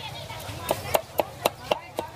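Cleaver chopping fish on a wooden block: one sharp strike at the start, then a steady run of strikes about four a second from just under a second in.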